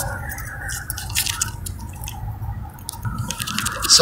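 Steady low rumble of road and tyre noise inside a 2011 Toyota Prius cabin at highway speed, about 106 km/h, with scattered soft clicks and rubbing from a handheld phone being moved.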